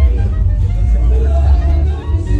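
People talking over background music with a heavy, continuous bass.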